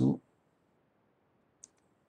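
A computer mouse click: one short, sharp click with a fainter tick right after it, about one and a half seconds in.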